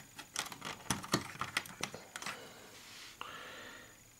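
Hard plastic clicks and clacks of the snap-in gates on a Hexbug Nano V2 Cyclone toy track being handled and shut. The clicks come in quick irregular succession for about two seconds, then give way to a faint rustle.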